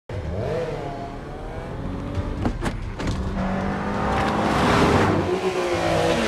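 Vehicle engines revving in a street chase, their pitch gliding up and down, with two sharp cracks about two and a half seconds in. Near the end a rising rush of noise swells as a vehicle closes in.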